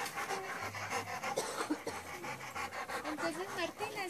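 Dogs panting, a quick run of short breaths.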